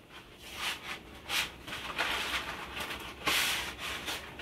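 Rustling and scraping of a cardboard box of dry bucatini pasta being handled, in a string of scratchy bursts that thickens in the second half, loudest a little after three seconds in.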